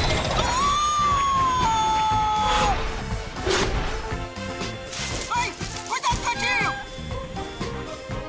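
Cartoon falling sound effect over background music: a long whistle gliding slowly downward, then a crash about three and a half seconds in as the falling figure hits the street in a cloud of smoke.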